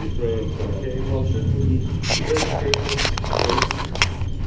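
Handheld Geiger counters clicking, with a dense run of clicks in the second half, over indistinct voices.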